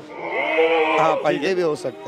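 Kota goat bleating: a long, wavering call lasting most of two seconds.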